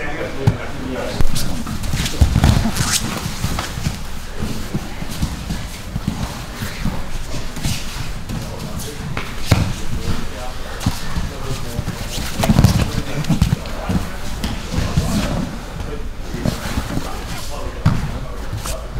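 Grappling on training mats: irregular thumps and slaps of bodies hitting the mat, with scuffling and voices in the background.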